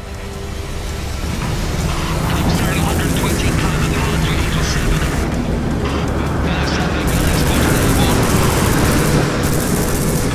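Loud aircraft engine roar from a formation of piston-engined warplanes, swelling up over the first couple of seconds and then holding, mixed with music.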